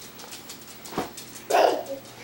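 Small shaggy dog barking: a short sharp sound about a second in, then a louder bark near the end.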